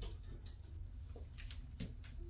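Four sharp clicks of surgical instruments being handed and handled, the last and loudest near the end, over a low steady room hum.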